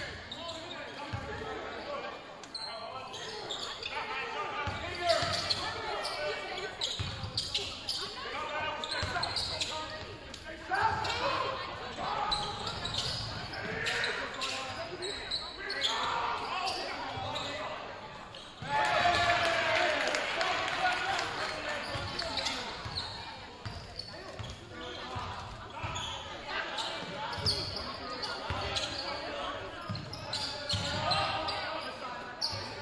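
A basketball dribbled on a hardwood gym floor in live play, repeated thuds echoing in a large gym, under the shouts and talk of players, coaches and spectators. The voices get louder a little past halfway through.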